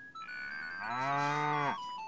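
A cow mooing: one low call about a second long that drops in pitch as it ends, with music playing underneath in held notes that step from one pitch to the next.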